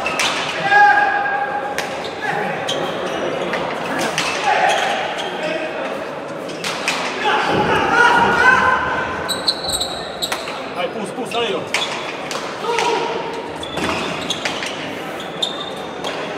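Hand-pelota rally: irregular sharp smacks of bare hands striking the hard ball and the ball hitting the walls and floor, echoing in the indoor court, with voices in the background.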